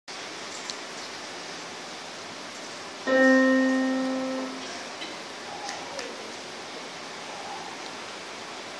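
A single piano note struck once about three seconds in and left to fade over about a second and a half, over a steady background hiss.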